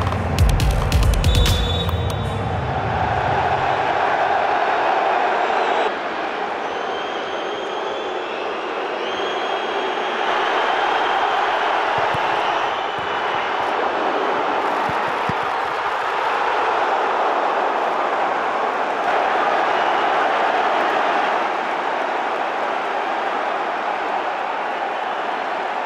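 Intro music that ends about two seconds in, then the steady roar of a large football stadium crowd, swelling and easing gently in waves.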